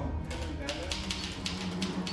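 Manual typewriter keys clacking in a quick run, about five strokes a second, over a low steady musical drone.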